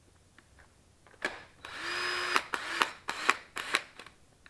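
DeWalt 20V MAX cordless drill's motor spinning for under a second and cutting out, then several short stuttering bursts as it catches and drops again. This is the intermittent cut-out of a poor connection between the battery and the tool.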